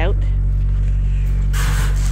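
A steady low machine hum drones without a break, with a short burst of rustling noise near the end.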